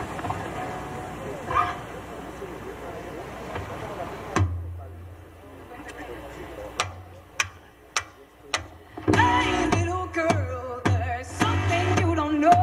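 Live acoustic rock band performance: talking for the first few seconds, then a low bass note and a few spaced drum hits, with singing and guitar coming in about nine seconds in.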